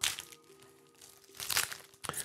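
Foil booster pack wrappers crinkling as they are handled, in two short bursts of rustling: one at the start and one about a second and a half in.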